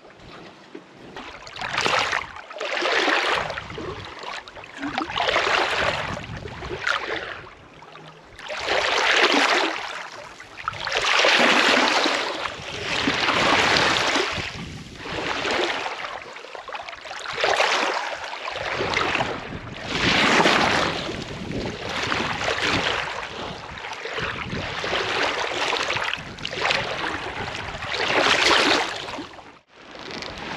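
Seawater rushing and sloshing against a sailboat's hull in repeated surges, roughly one every two seconds.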